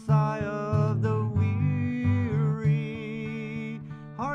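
Acoustic guitar strummed in a slow, steady rhythm, with a long wordless melody line held over the chords.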